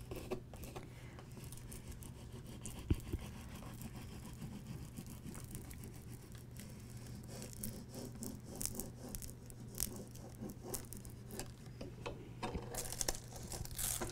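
Small plastic squeegee rubbed back and forth over transfer tape on a tile, burnishing vinyl lettering down: faint scraping and rubbing with scattered light clicks.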